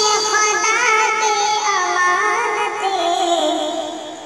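A single voice singing a long, drawn-out phrase of an Urdu poem, the pitch wavering and gliding in ornaments; the phrase trails off and fades near the end.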